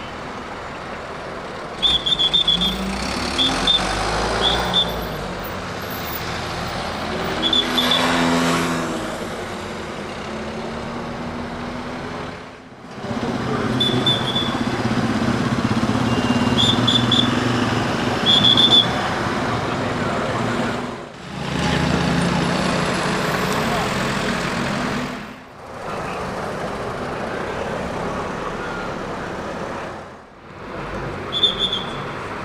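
Night street traffic: cars and motorcycles passing, one engine rising and falling in pitch as it goes by, with groups of short high-pitched tweets several times. The sound cuts between several separate takes.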